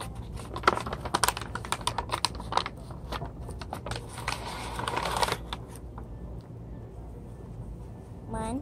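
Spoons clicking and scraping against cups while flour is scooped: a run of quick light taps, then a brief scraping rustle about four to five seconds in, followed by a few scattered clicks.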